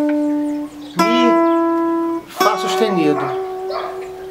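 Single notes picked on a sunburst hollow-body archtop guitar, climbing the A minor sixth pentatonic scale one step at a time. A new, higher note is picked about a second in and another near two and a half seconds, each left to ring; the last is held. A man's voice names each note as it is played.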